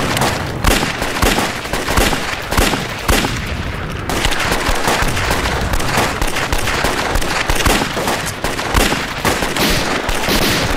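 Dense rifle and machine-gun fire from a film battle scene. Many shots a second overlap, with a short thinner patch about three seconds in.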